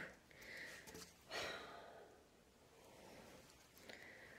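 Near silence: room tone, with two faint soft hisses in the first two seconds.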